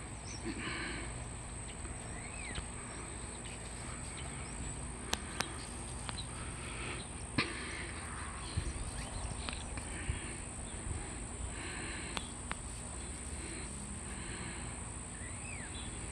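Outdoor yard ambience: a steady high-pitched insect drone, short bird chirps, and a few sharp clicks scattered through it.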